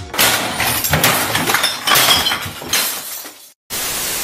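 A loud crash with shattering, like breaking glass, going on for about three seconds. After a brief silence it gives way near the end to a steady hiss of TV static.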